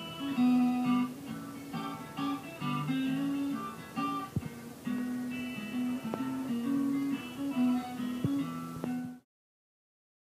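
Acoustic guitar fingerpicked in a ragtime-blues style, bass notes under a busy melody line, cutting off suddenly about nine seconds in.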